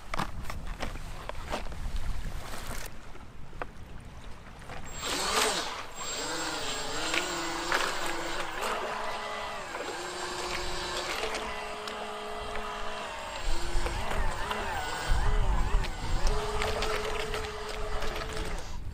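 Electric motors and propellers of a remote-controlled rubber duck boat whining, the pitch rising, falling and holding as the throttle changes. The whine starts about five seconds in, and wind buffets the microphone.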